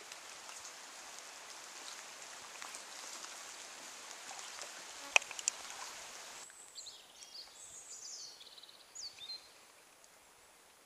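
Light rain pattering on leaves, a steady hiss of fine drips with one sharp tick about five seconds in. After a change in the sound about six and a half seconds in, a bird gives a few high, gliding whistles.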